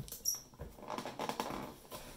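Handling noise from a hand-held acrylic-cased LCD display unit and its Velcro strap as it is picked up: light scratching and rustling clicks, densest through the middle. A brief high-pitched chirp comes just after the start.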